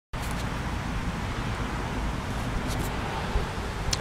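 Wind buffeting the phone's microphone, a steady low rumble, with a few faint clicks as the phone is handled and turned.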